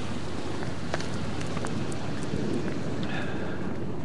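Wind on the microphone over steady outdoor street noise, with a few faint ticks.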